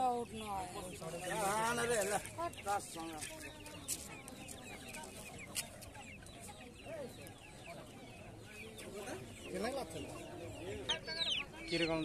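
Young Aseel chickens clucking on and off, busier in the first few seconds and again near the end, quieter in between.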